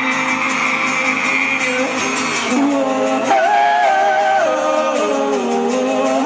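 Live pop song performed in concert: singing over an acoustic guitar and band. Held notes give way about two and a half seconds in to a moving sung melody line.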